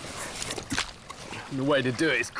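A few short clicks and rustles over a steady hiss, then a man's voice begins about one and a half seconds in.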